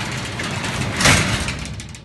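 A rough rushing noise, a cinematic whoosh used as a scene-transition effect, swells to a peak about a second in and then fades away.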